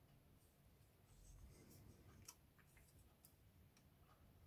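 Near silence: room tone with a few faint clicks from plastic model-kit sprues being handled, a little past halfway through.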